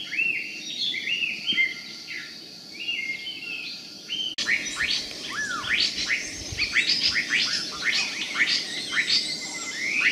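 Wild birds calling: a series of short arched, falling whistled notes, then, after an abrupt cut about four seconds in, a denser run of quick down-slurred chirps from more than one bird.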